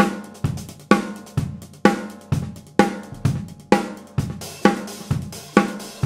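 Drum kit groove on 13-inch Istanbul Agop Custom Series Turk hi-hats, with a Yamaha maple snare and bass drum. A strong accented hit comes about twice a second, with lighter strokes between. The hats sound very crisp, a little dark and dry.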